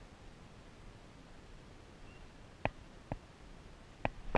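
Quiet outdoor background with a faint steady hiss, broken by two short clicks, the first about two and a half seconds in and the second about half a second later.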